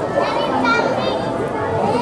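Crowd of children chattering and calling out at once, many young voices overlapping.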